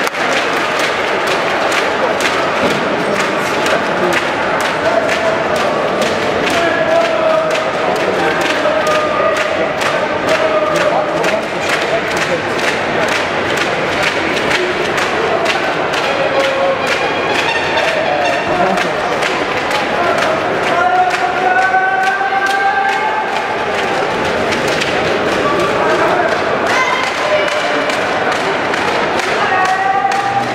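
Arena crowd shouting and chanting over a dense run of claps and thuds, loud throughout, with sustained drawn-out voices rising and falling.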